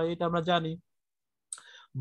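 A person speaking breaks off under a second in, leaving a short silence. A faint, brief click-like noise comes just before the talking resumes.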